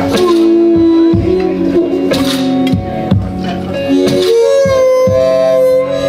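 Solo blues: electric guitar played with a harmonica on a neck rack, the harmonica holding long notes that bend in pitch and waver, over a steady low thumping beat.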